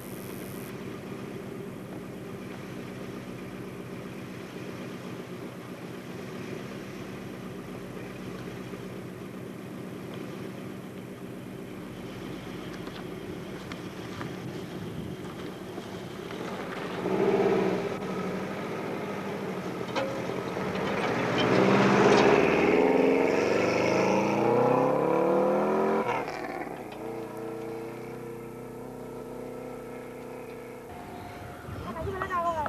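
Subaru RX Turbo rally car's turbocharged flat-four engine running steadily at low revs, then, just past halfway, a short loud burst of revs followed by a hard acceleration with the pitch climbing repeatedly through the gears. The engine sound drops away sharply a few seconds before the end as the car moves off.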